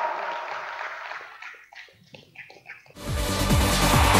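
Applause from a small crowd in a sports hall fades out into a few scattered claps. About three seconds in, a loud music jingle with a beat cuts in abruptly.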